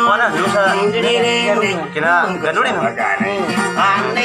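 Dayunday singing: a voice carrying a wavering, ornamented melody over plucked guitar accompaniment.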